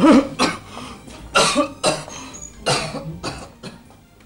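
A man coughing: about six harsh coughs over four seconds, coming roughly in pairs.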